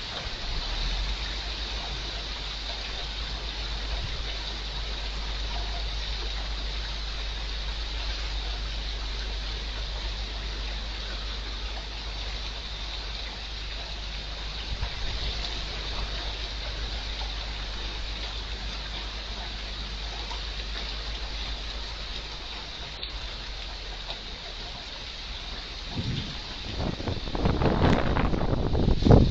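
Heavy rain falling steadily, an even hiss with a low rumble beneath it. Near the end, louder gusty rumbling joins in.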